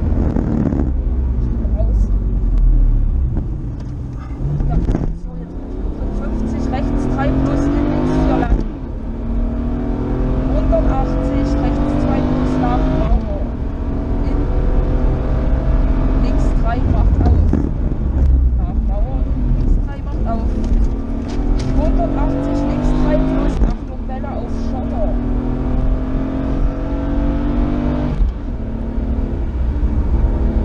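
BMW rally car's engine heard from inside the cabin at full stage pace, its pitch climbing hard and then dropping at each gearchange, several times over as it accelerates and lifts for corners.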